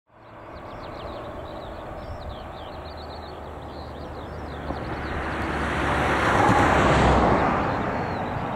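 A car approaching and driving past, loudest about seven seconds in, then fading away. Birds sing throughout with many short chirps.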